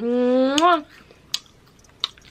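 A woman's voice making a held, closed-mouth hum ("mmm") of under a second, steady and then rising in pitch at its end, followed by a single short click from the mouth about a second and a half in.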